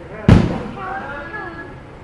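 A softball bat hitting a ball once, about a third of a second in: a single sharp crack that rings on briefly in the large metal-roofed building.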